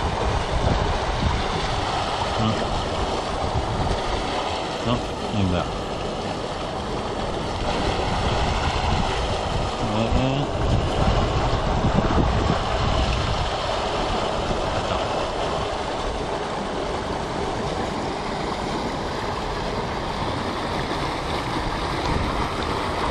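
Steady rush of water pouring out of a drainage outlet pipe into a river.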